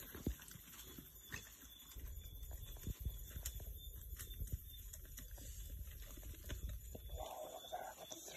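Bushpigs foraging close by on stony ground: faint rustling with scattered small clicks and knocks.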